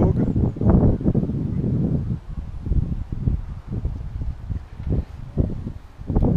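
Wind buffeting the camera microphone outdoors: uneven low rumbling gusts.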